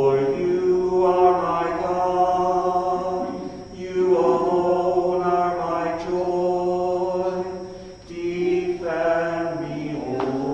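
Sung liturgical chant in long held notes, in three phrases of a few seconds each with short breaths between.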